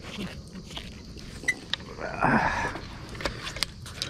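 Scattered clicks and knocks as a rusty trolley jack, stuck to a magnet-fishing magnet on a rope, is hauled up over a metal bridge railing onto a wooden deck. There is a short, rough, louder burst about two seconds in.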